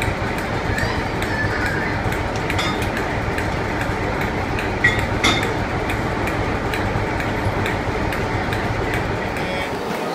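Steady rumble and hiss of a steam-hauled train close by the coupling between Flying Scotsman's tender and the first coach, with a couple of light knocks about five seconds in.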